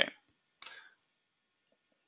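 Near silence after the end of a spoken "okay", broken by one brief, soft noise a little over half a second in.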